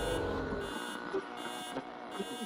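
Electronic outro of a hip-hop track: sustained synthesizer tones with slow falling glides and a regularly repeating high pulse. The bass drops out just under a second in.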